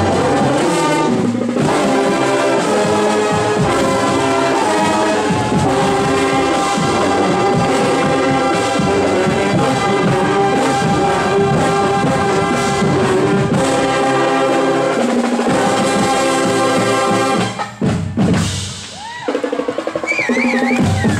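Drum and bugle corps brass line and drums playing a march on parade, loud and steady with stacked brass chords over the drumming. The playing breaks off briefly near the end.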